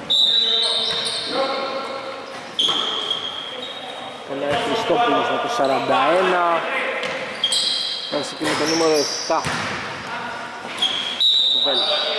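Basketball game sounds echoing in a large gym: a ball bouncing on the court, several short, shrill, high-pitched squeaks, and players' shouts.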